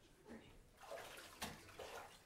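Faint splashing and sloshing of water in a church baptistry, with a sharp knock about one and a half seconds in.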